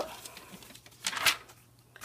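A glossy magazine page being turned by hand: a short papery swish about a second in.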